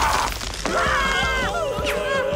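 Cartoon sound effect of the giant scissors snipping the monster apart: a sudden shattering burst at the start, then sliding, bending tones over the score.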